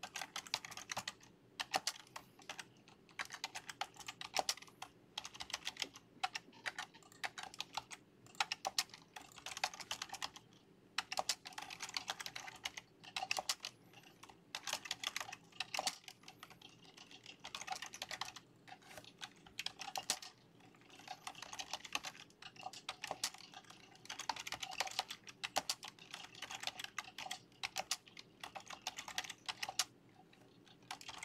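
Typing on a computer keyboard: runs of rapid key clicks broken by short pauses.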